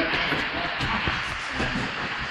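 Two fighters grappling in a clinch on a gym mat: scuffling, with a few short soft knocks over an even room noise.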